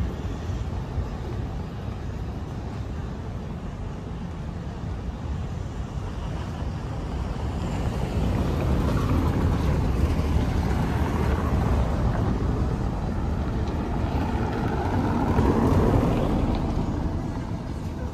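Cars driving slowly along a cobblestone street, their tyres rumbling on the stones. The rumble grows louder about halfway through as a car passes close, and eases off near the end.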